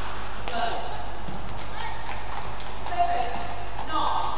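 Badminton rally: sharp cracks of rackets striking a shuttlecock, with short squeaks of players' shoes on the court mat.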